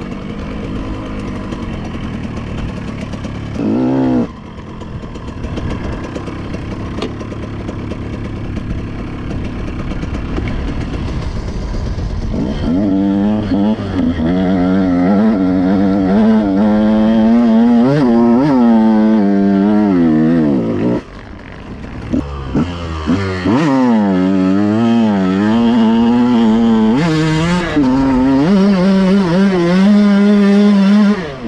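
KTM 125 two-stroke dirt bike engine ridden off-road: it runs low and steady at first with one short rev about four seconds in, then from about halfway the revs rise and fall again and again, with a brief lift off the throttle around two-thirds of the way through.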